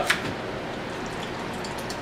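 Steady, even background hiss with no distinct event standing out.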